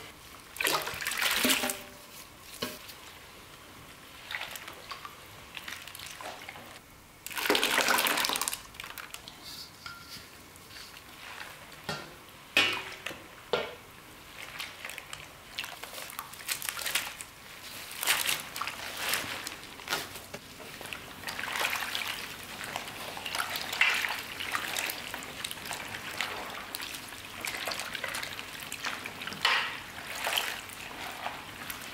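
Liquid sloshing and splashing in a large stainless steel basin as gloved hands stir chopped green onions and young radish greens through it, in irregular bursts.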